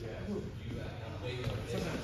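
Footsteps thudding on a wooden gym floor as two rapier fencers close in and grapple, under indistinct voices in a large hall.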